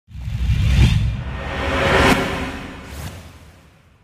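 Short intro music sting with whoosh effects: a deep low hit, a swelling whoosh peaking about two seconds in and a brief swish about a second later, fading out near the end.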